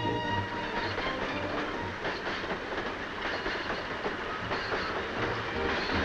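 Train of loaded steel ore cars rolling along, a steady rolling noise broken by frequent irregular clicks of wheels over rail joints.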